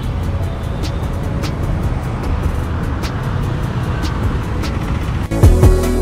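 Road traffic running past, a steady low rumble, under background music with a light beat; about five seconds in, the traffic cuts off and louder music takes over.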